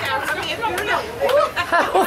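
Voices of several people talking at once, just after the music stops.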